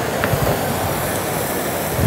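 Steady sizzling and simmering from pans on a gas range: fish fillets searing in oil and shrimp poaching in white wine.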